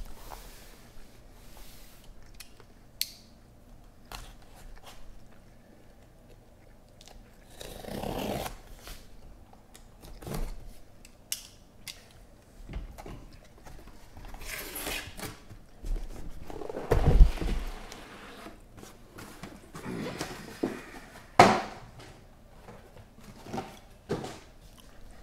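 A cardboard shipping case being handled and opened, with irregular scraping and rustling of cardboard and plastic wrap, and knocks as shrink-wrapped hobby boxes are taken out and set down in stacks. The loudest knocks come about 17 and 21 seconds in.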